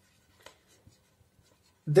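Faint strokes of a marker pen writing on a whiteboard.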